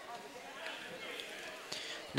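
Faint background chatter of people's voices in a school gymnasium.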